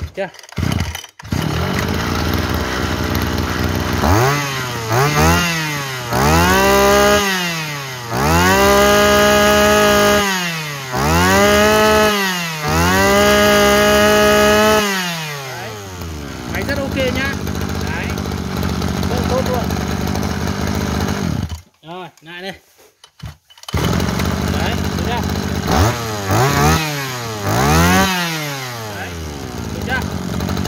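Mitsubishi TL26 two-stroke brush-cutter engine, running bare off its shaft. It starts about a second in and is then revved up and down in a series of blips, its pitch sweeping up, holding high for a second or two, and falling back. Between revs it runs steadily. About two-thirds of the way through it goes quiet for about two seconds, then runs again with three more quick revs.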